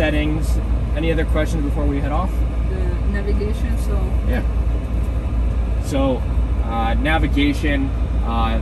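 People talking quietly inside a car cabin, over a steady low rumble.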